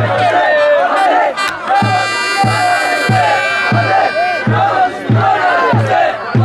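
Football supporters chanting together over a steady drum beat. A horn sounds one long held note through the middle.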